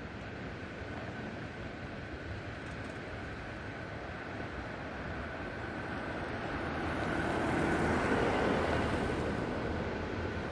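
Steady outdoor rushing noise with a faint high steady tone; the rushing swells louder from about six seconds in, peaks, and eases off near the end.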